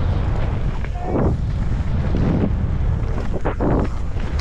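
Wind rushing over the camera microphone as a mountain bike descends at speed, with the tyres rolling over loose dirt. A few knocks from the bike come near the end.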